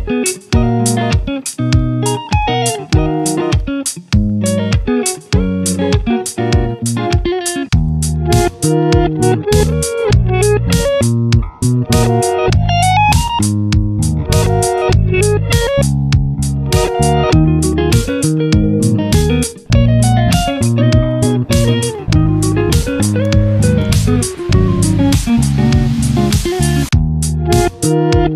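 Background music: a guitar-led instrumental track with a steady beat, its bass part filling out about eight seconds in.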